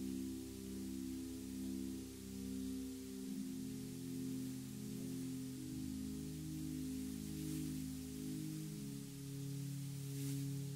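Slow, soft instrumental music: held chords that change every second or two, with low bass notes underneath for stretches.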